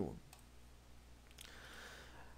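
Two faint clicks over quiet room tone, about a third of a second in and again about a second and a half in.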